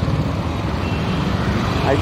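Hero Honda CD 100 Deluxe motorcycle's single-cylinder four-stroke engine running steadily at low revs, its exhaust a dense low pulsing.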